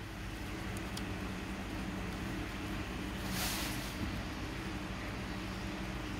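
A steady low mechanical hum in the background, with a brief rustle about halfway through.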